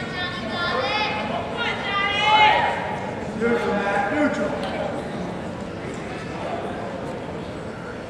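People shouting across a reverberant gymnasium: three loud calls in the first few seconds, the middle one the loudest, over a steady hum of the crowd in the stands.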